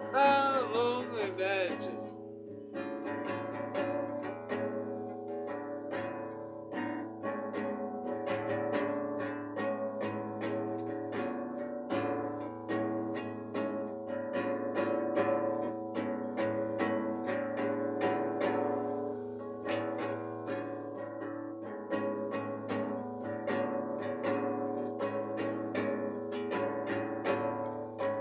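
Nylon-string classical guitar strummed in a steady rhythm through an instrumental break, with a sung note trailing off in the first two seconds.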